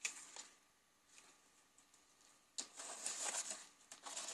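Faint rustling of paper tags and old book-paper journal pages being handled, mostly quiet until a soft rustle about two and a half seconds in.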